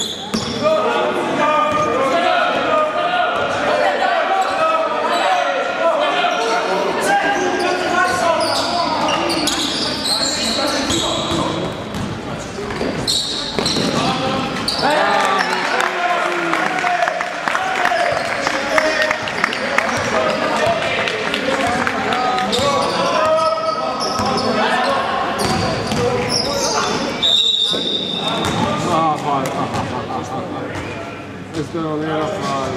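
Basketball game in a gymnasium, echoing in the hall: players' and coaches' voices calling over one another, with the ball bouncing on the court. Near the end there is a short, high, steady referee's whistle blast.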